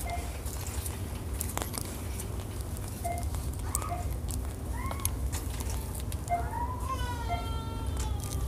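Store background: a steady low hum with brief faint distant voices and scattered small clicks and rustles.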